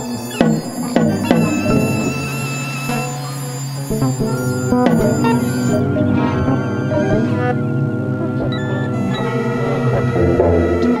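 Korg AG-10 General MIDI sound module playing dense, atonal sustained tones over a low drone, with a few sharp struck attacks in the first second and again about five seconds in. The notes are played over MIDI from Fragment's pixel data.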